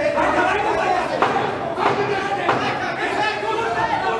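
Several people talking and calling out in a large echoing hall, with three sharp slaps or knocks in the middle.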